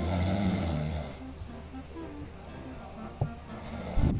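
A man snoring in his sleep, loudest in the first second, then fainter.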